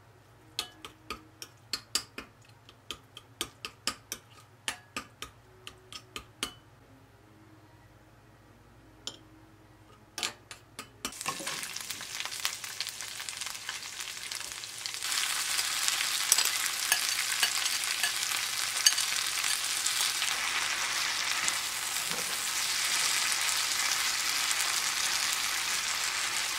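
A spoon clicking against a glass mixing bowl, about two or three times a second for the first six seconds, as a doenjang and oyster-sauce mix is stirred. About eleven seconds in, oil starts sizzling in a pan as garlic, chili and water spinach stir-fry, louder from about fifteen seconds on, with a wooden spatula stirring through it.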